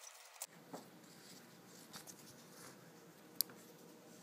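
Faint handling noise of paracord strands being worked through a metal sling swivel over paper, with a single sharp click about three and a half seconds in.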